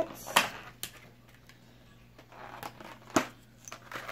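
Scattered small clicks and taps of nail-supply items being handled, the sharpest a little over three seconds in, over a faint steady low hum.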